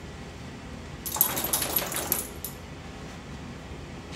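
A beagle scrambling about: a burst of rapid clicking and rattling, about a second and a half long, starting about a second in.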